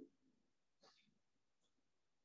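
Near silence: the line goes quiet in a pause between sentences.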